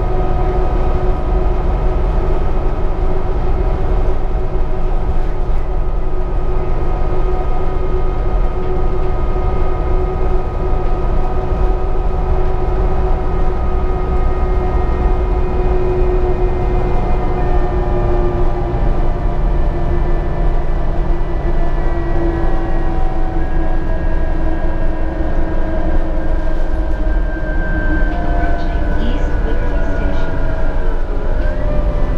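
Interior ride noise of a 2013 New Flyer D60LFR articulated diesel bus on the move: a steady low rumble with several steady whining tones, which slowly drop in pitch through the second half. Near the end a short higher gliding tone appears.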